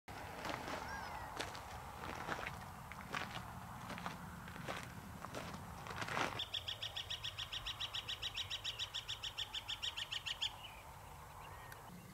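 A bird gives a rapid, even trill of about nine notes a second, lasting about four seconds from about six seconds in, after a few faint chirps. Before that, footsteps crunch on a gravel trail.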